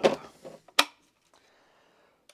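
A single sharp plastic click about a second in, as the parts of a Varrox Eddy oxalic acid vaporiser are snapped together.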